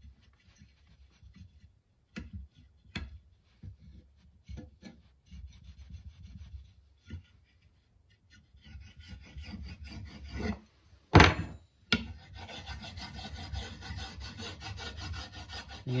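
Flat steel burnishing tool scraping and rubbing along a beeswaxed wooden axe handle in repeated strokes, knocking down rough spots and pressing wax into the grain. Short strokes give way to longer stretches of scraping later on, with one sharp knock about eleven seconds in, the loudest sound.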